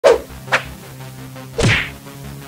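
Edited intro sound effects: three sharp whack-like hits, the last and longest with a sweeping swoosh, over a faint music bed.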